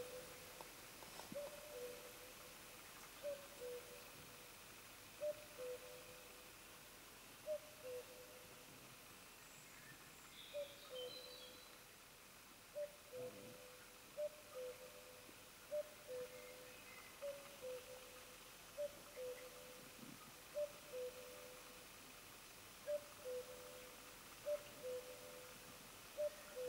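A bird's two-note call, a higher note dropping to a slightly lower one, repeated steadily about every two seconds over a faint background.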